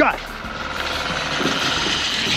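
Fishing reel's drag buzzing as a hooked salmon strips line off a trolling rod, a steady rippling whir that grows louder.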